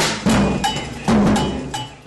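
Percussion in a steady beat: low drum strikes alternating with sharper strikes that ring briefly, fading out near the end.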